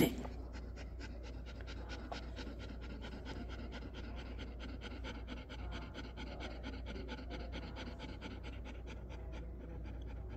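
Dog panting steadily, about five quick breaths a second.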